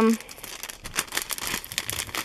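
Clear plastic bag crinkling as it is handled, an irregular run of small crackles.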